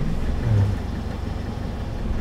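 Kia manual-transmission light truck's engine running at low revs and labouring as the clutch is let out for a hill start, with too little power given through the half-clutch: the engine is bogging down toward a stall.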